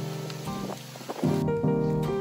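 Background piano music: held notes that thin to a sparse, softer passage, then fresh chords come in a little past halfway.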